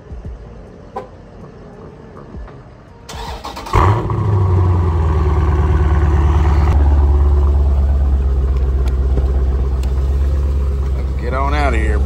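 2018 Dodge Challenger T/A 392's 6.4-litre HEMI V8 starting about four seconds in, flaring briefly, then settling into a loud, steady low idle through its exhaust.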